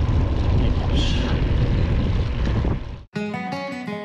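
Wind rushing over the microphone of a bike-mounted camera while riding over brick paving, a steady low rumble. About three seconds in it cuts off suddenly and guitar music begins.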